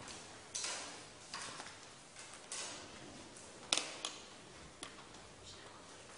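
Classroom handling sounds: paper rustling and small knocks and clicks on school desks, in several short separate bursts, with the sharpest click a little past halfway.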